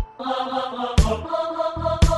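Instrumental General MIDI remake of a reggaeton song, in a short break: the bass and beat drop out at the start, leaving sustained choir-like synth voices and pad chords. There is a single drum hit about a second in, and the bass and kick return near the end.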